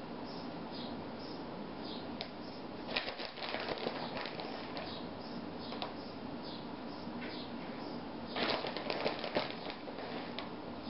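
Plastic bag of shredded mozzarella crinkling and rustling in the hand as cheese is pinched out and sprinkled, in two bursts, about three seconds in and again near the end, with a few small clicks between.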